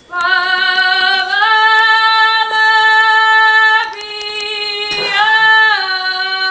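A woman singing a folk song solo, with no accompaniment, in long held notes. The pitch steps up about a second and a half in, drops briefly near four seconds and rises again past five.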